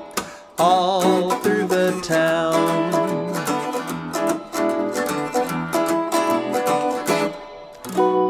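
Guitar playing an instrumental break in a children's sing-along song, with a short wavering melodic line about a second in.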